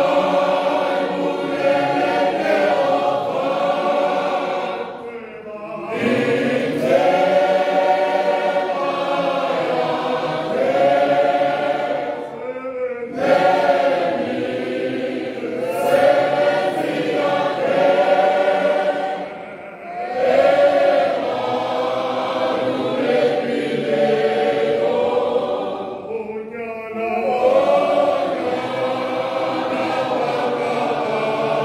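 A church congregation singing a hymn together, many voices in long held phrases, with a brief dip between phrases about every seven seconds.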